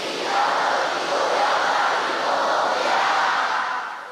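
A large group of voices chanting together in unison, which stops at the end.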